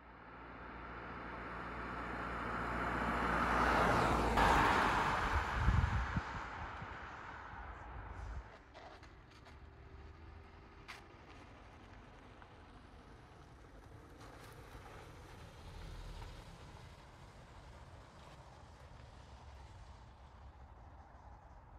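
A Peugeot 508 plug-in hybrid driving past, its tyre and road noise swelling for about four seconds and then fading away. After that comes a quiet, steady outdoor background.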